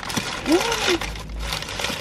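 Close-miked chewing and crunching of a hard-shell taco, with a short hummed "mm" that rises and falls about half a second in.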